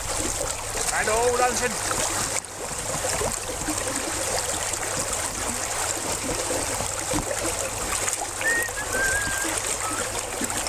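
Open water splashing and sloshing as people in winter clothing swim through icy lake water among broken ice. A voice is heard briefly about a second in and again near the end.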